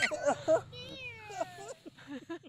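Voices talking, with one long falling, meow-like call about a second in.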